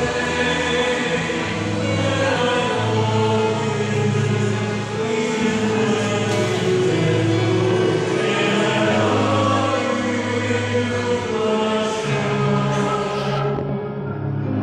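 A choir singing a slow hymn in long held notes.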